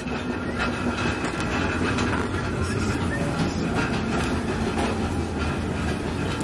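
Shopping cart rolling, its wheels and wire frame rattling steadily on a hard store floor.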